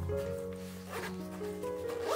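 A short zip from a side zipper of a Peak Design Everyday Backpack 20L about a second in, over background music with held notes.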